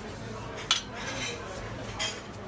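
A utensil clinks once, sharply, against a dish about two-thirds of a second in, with fainter kitchen clatter over a low steady hum.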